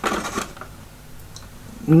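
Hands handling a plastic toy and a small torch: a few light clicks and scrapes in the first half second, then quiet handling.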